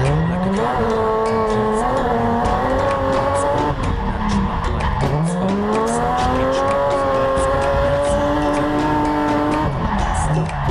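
Drift car engine at high revs, heard from inside the cabin. The pitch climbs as it revs up about half a second in and again about five seconds in, then holds high, with the tyres squealing.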